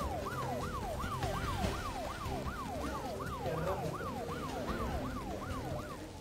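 A siren sounding in fast yelps: the pitch jumps up and slides down about three times a second, stopping near the end.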